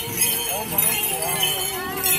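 Dancers' bells and rattles jingling steadily, with voices and a thin held melody over it.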